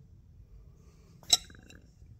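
A single light metallic clink about a second in, with a short ring after it.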